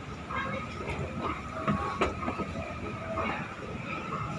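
Escalator running: a steady mechanical rumble and clatter from the moving steps, with a couple of sharp clicks about two seconds in.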